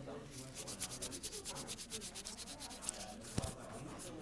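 Blue nitrile-gloved fingers rubbing on a clip-on microphone held right against them, giving a fast run of close, scratchy strokes at roughly ten a second. There is one bump on the mic about three and a half seconds in.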